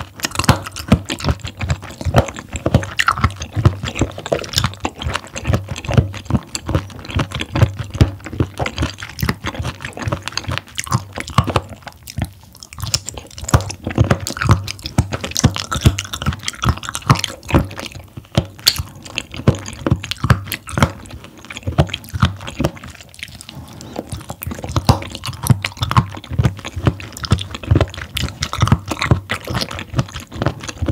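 Close-miked chewing of raw abalone slices: a steady run of wet, crunchy mouth sounds with short clicks, broken by two brief lulls.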